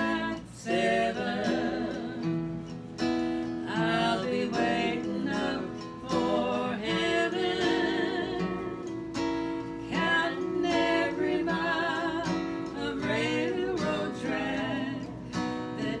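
Two women singing together to a strummed acoustic guitar, at an easy, swinging tempo.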